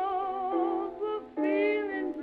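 Old recording of a woman singing with a wide vibrato: two long held notes, the second starting about one and a half seconds in. The sound is thin, with no deep bass or high treble.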